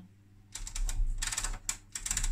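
Detented rotary volts-per-division switch on a Hameg HM312-8 oscilloscope being turned: a quick run of small clicks starting about half a second in, going on in spurts for over a second.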